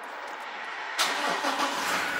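Toyota Hilux 2.8-litre four-cylinder turbo diesel starting up: it fires suddenly about a second in and settles into steady running.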